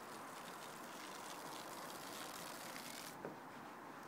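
Garden hose spray nozzle on its "full" setting: a faint, steady hiss of spraying water, whose upper part drops away about three seconds in.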